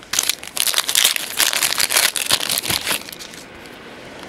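Trading-card pack wrapper crinkling and rustling as it is handled and pulled open, a dense crackle for about three seconds that then dies away.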